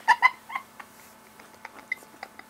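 Stifled, high-pitched giggling: a few short squeaky bursts of laughter in the first half second, then faint snickers and one brief squeak near the end.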